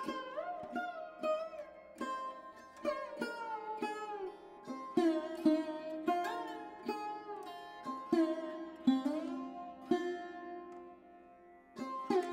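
Background instrumental music: a plucked string instrument plays a melody of single notes, many of them bending in pitch after the pluck, with a short pause near the end.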